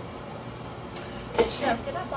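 A glass lid set down on a skillet of mussels steaming in wine, a short clink about a second and a half in, with a lighter click just before it.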